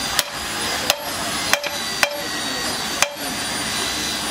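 Hand hammer striking steel parts on a six-cylinder Hino truck cylinder head: five sharp metallic blows, unevenly spaced about half a second to a second apart, some leaving a brief ring.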